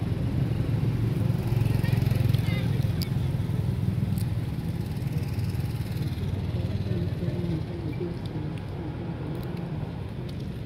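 A steady low rumble, loudest in the first few seconds and easing off toward the end.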